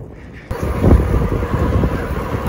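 Wind buffeting the microphone of a camera on a moving bicycle, a loud low rumbling noise that starts suddenly about half a second in.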